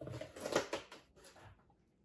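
Cardboard flat rate shipping box being handled and moved on a wooden tabletop: a run of scuffs, rustles and light knocks over the first second and a half, fading out.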